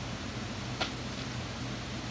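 Steady low hum and hiss of room background noise, with one short click just under a second in.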